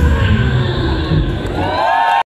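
A live rock band's bass and electric guitar ring out at the end of a song. The audience starts cheering, with a high shout rising near the end.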